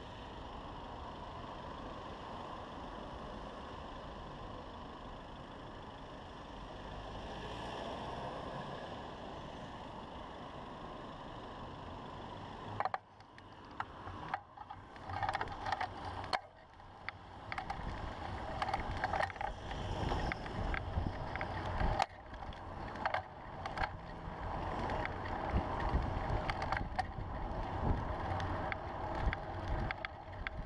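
Steady hum of city street traffic while the bicycle stands still. About 13 seconds in it gives way to uneven wind buffeting on the camera's microphone and road noise as the bicycle rides off, with sharp knocks and rattles from the bike over the road surface.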